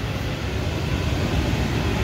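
Steady hum and rushing air of running HVAC equipment, with a low rumble and no distinct events.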